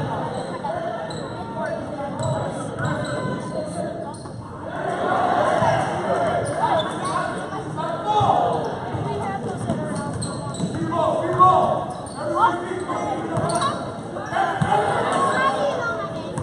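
A basketball being dribbled and bouncing on the gym court during a youth game, with spectators talking and calling out in an echoing gym.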